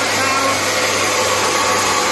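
UN6N40-LT mini rice mill, its 3 kW single-phase electric motor driving the whitening head, running steadily while polishing brown rice into white rice: an even whirring hum.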